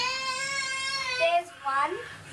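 A young girl's voice holding one long, steady sung note for about a second and a half, then breaking into speech.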